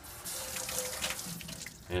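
Kitchen faucet running, water splashing into a stainless steel sink as black plastic hydroponic net pots are rinsed under it. It starts just after the beginning and runs steadily.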